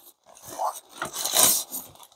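Soft white packaging wrap rustling and scraping as a small label printer is pulled out of it and handled, in irregular bursts, the loudest about a second and a half in.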